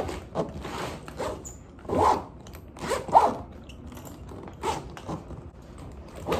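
Zipper of a hard-shell suitcase being pulled shut along the case in a series of short, uneven tugs, the loudest about three seconds in.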